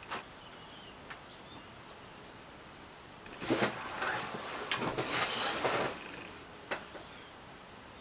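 A man sitting down heavily in a desk chair: clothes rustling and the chair creaking for a couple of seconds, starting about three and a half seconds in, with a single short click near the end.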